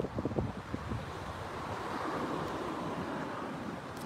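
Wind buffeting a phone microphone, a low irregular rumble over a faint hiss that swells gently in the middle.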